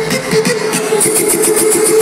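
Loud electronic dance music from a club sound system, recorded from the crowd. The low bass drops out here, leaving a steady synth note and, in the second half, quick high ticks about eight a second.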